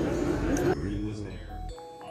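Muffled voices that fade out, then a few short, faint chime tones stepping in pitch near the end.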